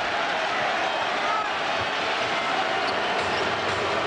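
Arena crowd making a steady din of many voices during live play, with a basketball bouncing on the hardwood court.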